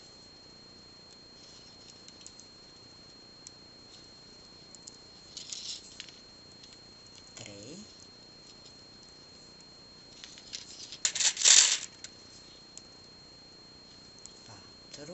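Pearl beads clicking and rattling against each other as they are handled and threaded onto thin metal wire, in scattered short bursts with the loudest cluster about eleven seconds in.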